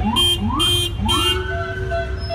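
An NYPD patrol car's electronic siren gives quick rising whoops, three in a row about half a second apart, each levelling into a held tone. Three short, high-pitched blasts sound over the whoops, with a steady low rumble of traffic underneath.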